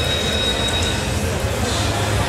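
Roulette ball rolling around the spinning wheel: a continuous rumbling whir, heard over casino background noise, with a thin high steady tone that stops about a second in.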